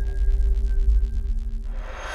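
Electronic intro music for a logo animation: a deep, steady bass under held synth tones that slowly fade, with a whooshing swell starting to rise near the end.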